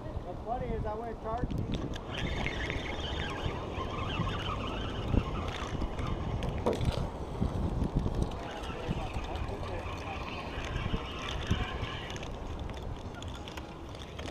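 Sea wind buffeting the microphone in a steady low rush, with faint voices in the background and a few sharp knocks.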